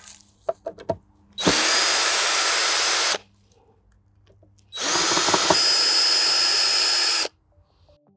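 Cordless drill driving screws out of the boards of a wooden raised garden bed. It runs twice, once for about two seconds and then for about two and a half, after a few light clicks.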